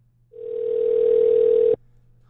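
A telephone line tone: one steady pitch heard over the phone line for about a second and a half, which cuts off suddenly.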